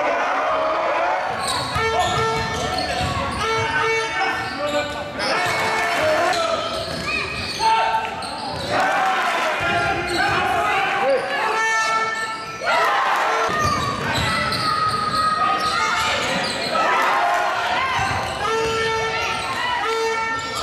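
Live basketball play in a sports hall: the ball bouncing on the court, with indistinct voices of players and spectators calling out, echoing in the hall.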